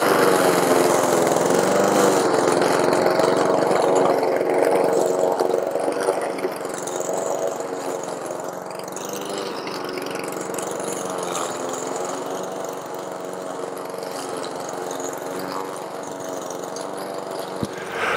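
Walk-behind gasoline rotary lawn mower running steadily while it cuts down strawberry foliage with its deck at the highest setting. It is louder for the first several seconds, then a little quieter.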